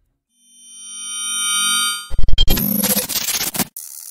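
Radio station ident sting. A synthesized tone swells up out of silence, then about two seconds in it breaks into a loud, stuttering burst of distorted glitch hits that cuts off abruptly shortly before the end.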